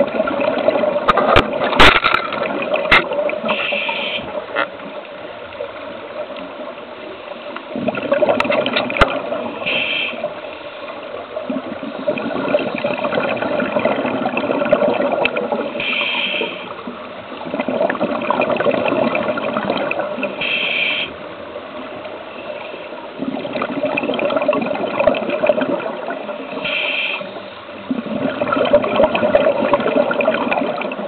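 Water rushing and gurgling in swells of a few seconds each, heard from behind an underwater viewing porthole, with a few sharp clicks in the first seconds and a short higher tone coming back about every five or six seconds.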